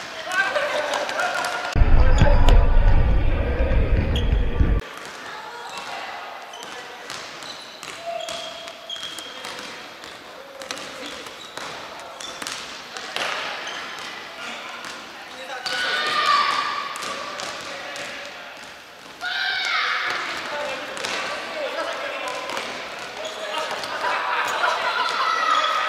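Futsal being played in an echoing sports hall: the ball being kicked and bouncing on the wooden floor, with players' shouted calls at several points. A loud low rumble lasts about three seconds near the start.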